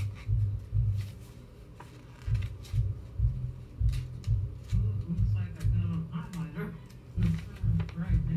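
Background audio from another video playing in the room, with a low pulsing music bed and a faint voice, over light rustling and clicks of a paper card and leaflet being handled.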